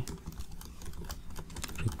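Typing on a computer keyboard: a quiet, uneven run of quick keystrokes as a word is typed.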